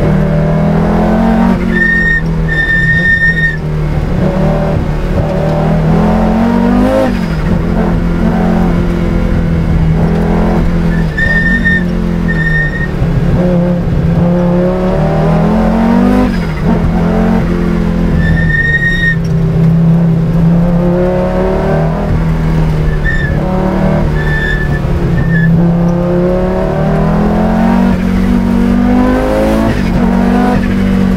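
Audi Sport Quattro S1's turbocharged five-cylinder engine, heard from inside the cabin, pulling hard through the gears. Its pitch climbs and drops back at each gear change, every few seconds. Brief high-pitched squeals come and go.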